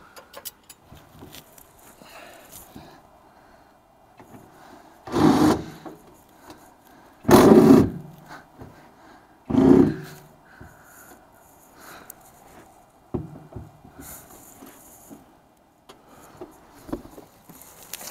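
Three short, loud bursts about two seconds apart from a tool working on the seat base's mounting bolts, which will not come loose, with faint scraping and knocking between.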